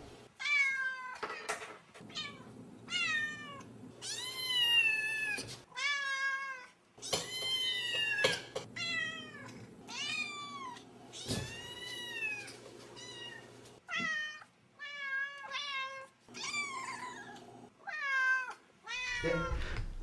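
Domestic cat meowing over and over, about one meow a second, each call rising and then falling in pitch.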